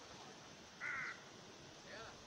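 A bird calls once, a short harsh caw, about a second in, over a faint steady background hiss.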